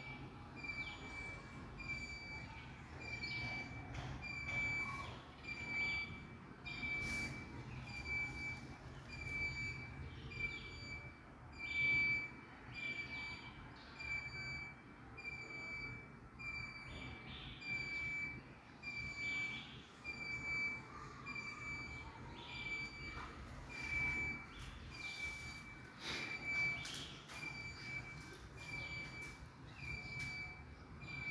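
A short, high-pitched note repeating steadily about once a second, over faint background noise and scattered clicks.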